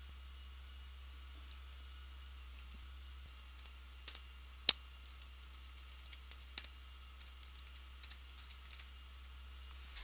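Typing on a computer keyboard: scattered key clicks, one louder than the rest, starting about three and a half seconds in, over a low steady hum.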